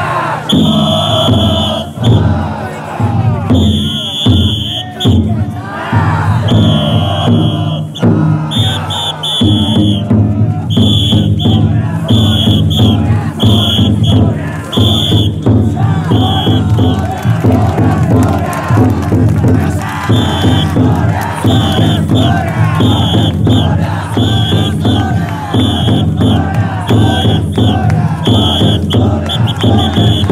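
A large crowd of taikodai bearers shouting and chanting together. Short high blasts repeat roughly once a second through much of it.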